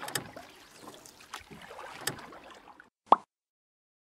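Paddle strokes in water, lapping and splashing with a few sharper splashes, until the sound cuts off suddenly to dead silence; a moment later a single short, sharp knock sounds.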